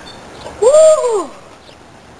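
A person's voice letting out one loud, wordless cry that rises and then falls in pitch, lasting under a second and starting a little over half a second in.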